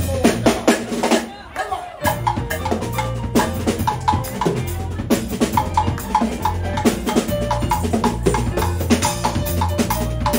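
Live jazz band playing, led by the drum kit with bass and piano: a drum fill, a short break about a second in, then the band comes back in at about two seconds with a steady drum groove and bass line.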